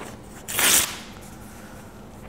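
A sheet of white paper torn by hand in one short rip, about half a second in.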